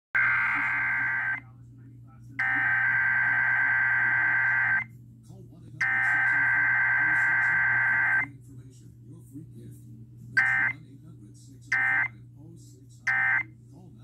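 Emergency Alert System SAME digital data bursts of a Required Weekly Test, played through a small portable FM radio's speaker: three header bursts, the longer ones about two seconds each and about a second apart, then three short end-of-message bursts near the end, over a low steady hum.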